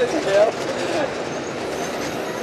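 Steady engine and road noise heard inside a moving bus, with a brief snatch of a person's voice at the start.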